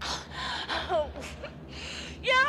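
A woman gasping and panting in fear during a struggle, in several sharp breaths, with a short falling whimper about a second in.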